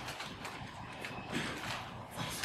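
A few soft, irregular clicks and knocks over low room hiss.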